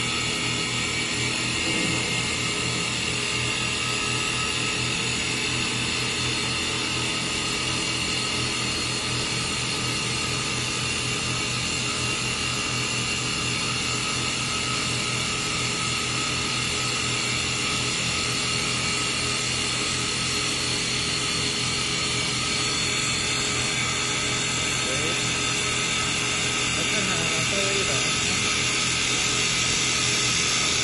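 Stylecnc STL1516-2 double-axis CNC wood lathe turning two baseball bat blanks at once. It runs steadily, a motor and spindle whine of several steady tones under the hiss of the cutters shaving wood.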